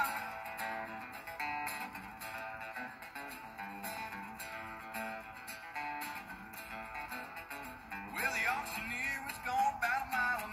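Acoustic guitars playing an instrumental passage of a country song, with a male voice coming back in singing about eight seconds in.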